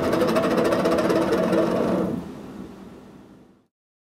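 Metal-spinning lathe running, with a tool pressed against the spinning copper: a fast, even rattling chatter over several steady ringing tones. It fades out from about two seconds in and is gone just before the end.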